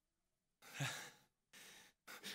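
A man's audible sigh into a close microphone, starting just over half a second in, followed near the end by a shorter, softer breath.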